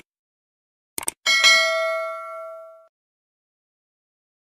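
Two quick clicks, then a single bell ding that rings out and fades over about a second and a half, typical of an outro notification-bell sound effect.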